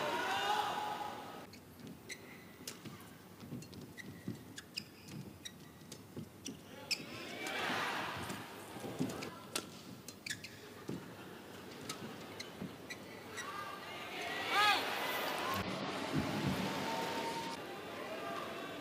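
Badminton match sound: irregular sharp strikes of rackets on the shuttlecock and shoes squeaking and thudding on the court, with a short swell of crowd noise about eight seconds in.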